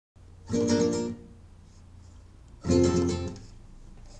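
Nylon-string classical guitar strumming two chords about two seconds apart, each ringing briefly and then stopped short.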